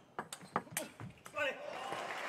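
Table tennis ball clicking off bats and table several times in quick succession in a fast rally. About a second and a half in, as the point is won, a loud shout breaks out and runs into cheering from the crowd.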